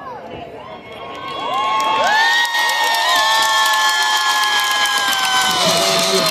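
Crowd cheering with many overlapping high, held shouts, swelling about a second and a half in and staying loud.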